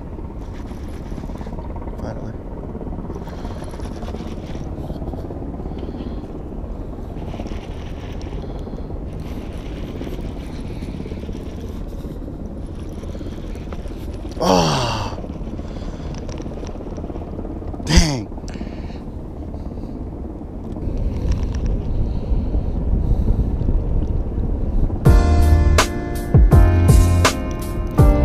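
Steady outdoor wind and water noise on a body-worn camera microphone, broken by two short sliding tones near the middle. Background music with a steady beat comes in near the end.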